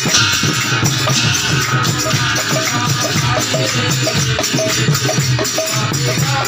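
Devotional naam-kirtan percussion: a khol barrel drum beaten in a fast, steady rhythm under continuous jangling of small brass hand cymbals (taal).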